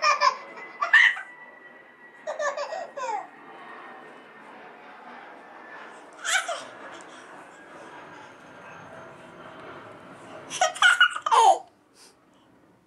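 A toddler laughing and squealing with delight in four short bursts, the longest near the end.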